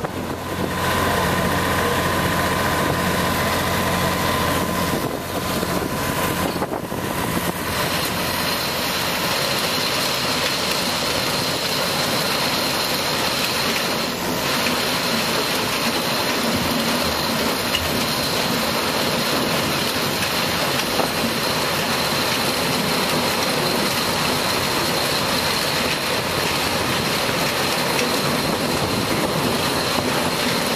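Sugarcane harvester and its machinery running loud and steady close by. A steady engine hum in the first few seconds gives way to a denser, even machinery noise as the harvester works alongside the cane trailer.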